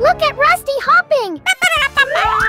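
Wordless, high-pitched cartoon-character voice sounds with swooping pitch, several quick rising and falling exclamations, over cheerful children's background music.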